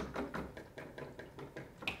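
Hand sanitizer pump bottle being pressed and the gel rubbed between the hands: a run of faint, irregular clicks and taps, the sharpest one near the end.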